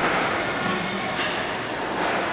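Horizontal steam pumping engine running at a steady pace, with a rhythmic, hissing beat from its steam and valve gear about once a second.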